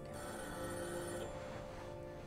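Telephone bell ringing in bursts of a little over a second, one burst starting just after the start and stopping about a second in, over soft sustained music.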